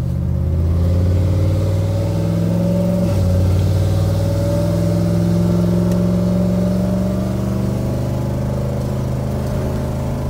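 Chevrolet pickup truck's engine pulling under acceleration, heard from inside the cab. Its pitch climbs steadily, drops once about three seconds in as the automatic transmission upshifts, then climbs again.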